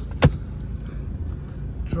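Mercedes C250 CDI's 2.1-litre four-cylinder turbodiesel idling steadily, heard from inside the cabin as a low hum. A single sharp click stands out about a quarter second in.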